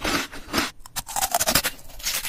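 Close-miked mouth eating sounds: crunchy bites and chewing of a firm, icy or jelly-like food, in an irregular quick run that thickens in the second second.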